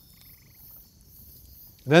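Faint night-time outdoor sounds in a pause: a short pulsed chirp about half a second in, over a faint steady high insect hum. A man's voice starts right at the end.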